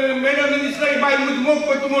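A man speaking into a stage microphone, his voice drawn out in long held syllables.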